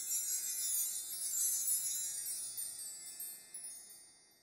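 High, shimmering chimes ringing together and slowly fading, dying away toward the end.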